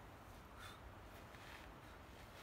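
Near silence: faint outdoor background, with a couple of faint brief sounds about half a second and a second and a half in.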